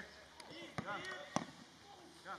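A football being kicked on a grass pitch: two sharp thuds, the second louder, with faint distant shouts of players in the background.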